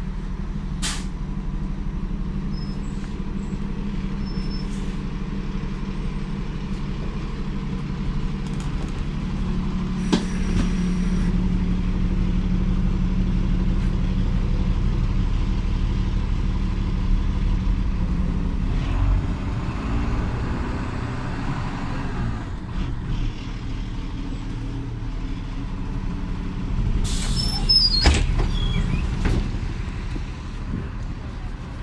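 Ikarus 127V city bus heard from inside the passenger cabin, its diesel engine running with a steady low drone as the bus moves. A short hiss of compressed air comes about ten seconds in, and louder bursts of air hissing come near the end.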